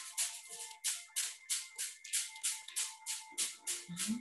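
A hand tapping briskly along the arm in qigong chi-tapping self-massage: an even run of quick, crisp pats, about four to five a second. Faint steady tones sit underneath.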